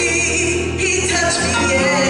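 A woman singing a gospel song into a microphone, holding long notes with vibrato, over a low held note underneath that fades near the end.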